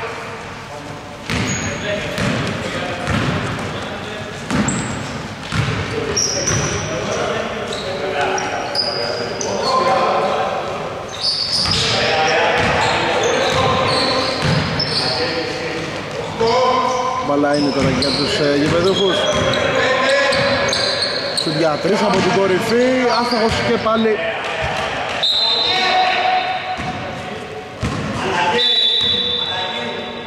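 Basketball game sounds in a gym: the ball bouncing on the wooden court, short high squeaks and players' voices calling out, all echoing in the large hall.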